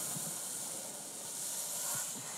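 Steady high hiss of background noise, with no other sound standing out.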